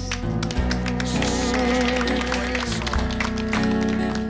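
Live country band playing an instrumental introduction: a steady tapping, strummed beat under sustained held notes, just before the vocal comes in.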